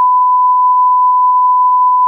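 Loud, steady electronic beep at a single unchanging pitch, a censor-style bleep tone.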